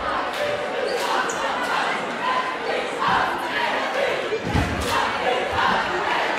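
Ambient sound of a high school basketball game in a gymnasium: crowd chatter and voices echoing in the hall, with one loud thud of a basketball bouncing on the hardwood floor about four and a half seconds in.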